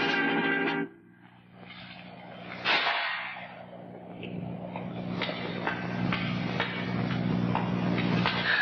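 Dramatic film-score music. A sustained chord cuts off suddenly about a second in. The music returns with a sharp accent near three seconds and goes on as steady low notes under repeated struck accents.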